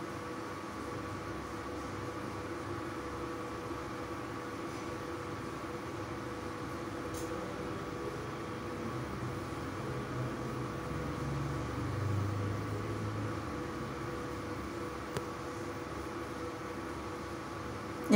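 Steady hum of an induction cooktop under a faint sizzle of hot oil, as a puri deep-fries in a steel kadhai.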